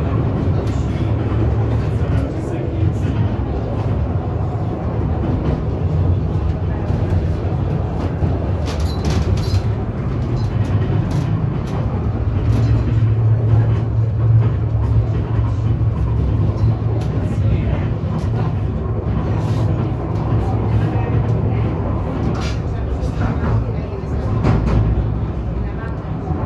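Funicular railway car running downhill on its rails, heard from inside the cabin: a steady low rumble with scattered clicks and rattles.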